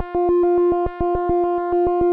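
Analogue synthesizer oscillator holding one steady pulse-wave note while a stepped random LFO modulates its pulse width. The tone and loudness jump to a new value with a small click about seven or eight times a second.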